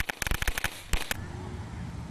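Small ground firework on gravel crackling with rapid, irregular sharp pops, which stop about a second in and leave a low background noise.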